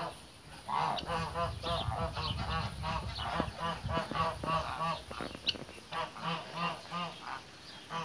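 A flock of brown Chinese geese honking, in strings of short calls several a second from more than one bird, with a thinner spell about two thirds of the way through. A low rumble sits under the first half.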